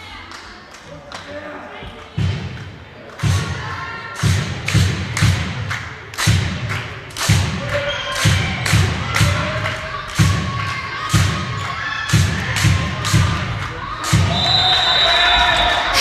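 Handball game sounds: a steady run of thuds, two or three a second, with shouting voices over them. Near the end comes a long referee's whistle blast, calling an offensive foul.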